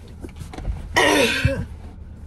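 A woman clearing her throat once, a rough burst about a second in.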